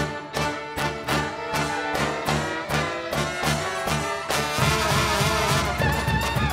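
A Balkan brass band plays live: a bass drum with a cymbal beats a steady pulse under brass, accordion and fiddles. About four and a half seconds in, the music turns louder and fuller, with faster drum strokes.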